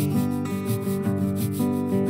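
Acoustic string-band music without singing: acoustic guitar and mandolin holding chords over a steady, rhythmic high percussion pattern.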